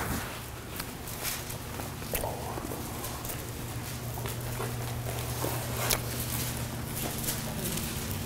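Soft rustling of robes and light footsteps, picked up close by a clip-on microphone, with scattered small taps and clicks over a steady low hum.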